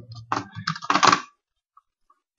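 Computer keyboard keys being typed: about five keystrokes in quick succession, stopping after about a second.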